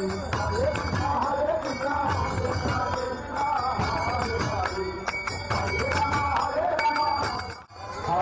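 Namkirtan devotional music: voices chanting a melody over rhythmic khol drum strokes. It cuts out briefly just before the end.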